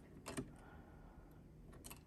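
A few faint plastic clicks as a 12-volt cigarette-lighter plug is pushed and turned in a power station's 12 V socket: one about half a second in and a quick pair near the end.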